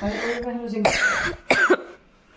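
A young woman's voice: a long, level drawn-out 'hmm' while she thinks, then two short coughs.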